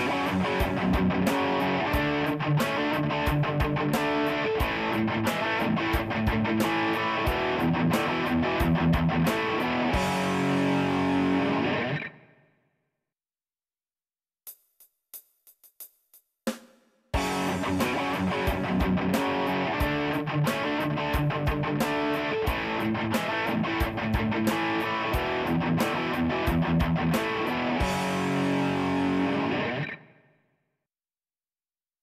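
Double-tracked distorted electric rhythm guitar through a Fireman HBE amp playing a riff over drums, the two guitar tracks panned left and right. The riff stops and fades about twelve seconds in, a few clicks count in, and it starts again about seventeen seconds in with the two tracks panned narrower.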